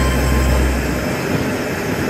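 Background music ends about a second in, leaving the steady noise of a passenger train on the move.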